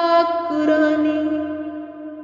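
A woman's sung qasida recitation ending on one long held note, a steady tone that fades away.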